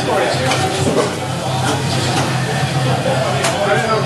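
Indistinct voices and chatter in a busy restaurant, over a steady low hum that stops near the end.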